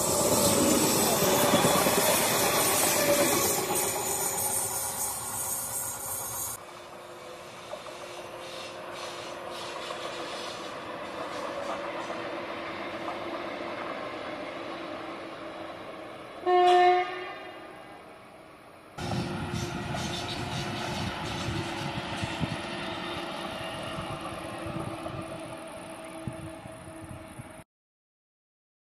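Electric passenger trains running past on the rails: a close pass-by, loudest at the start, then a quieter train. Partway through the quieter train comes one short, loud horn blast. Near the end the sound cuts abruptly to silence.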